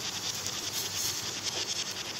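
Milk heating in a steel pot on the stove, a soft steady hiss with faint crackling as it simmers.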